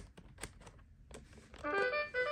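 Plastic answer dial of a LeapFrog Twist & Shout Division toy clicking in irregular steps as it is twisted, then, about a second and a half in, the toy's short electronic brass-like jingle: the fanfare for a correct answer.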